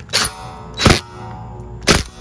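Cordless drill driving a screw into the aluminium screen door frame in three short bursts, with a metallic ringing tone between them.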